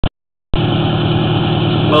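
An engine running steadily. It cuts in about half a second in, after a brief blip and a short silence.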